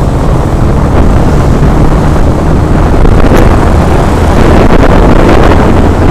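Loud, steady wind rumble on a helmet-mounted action camera's microphone during a motorcycle ride, with the bike's road and engine noise mixed underneath.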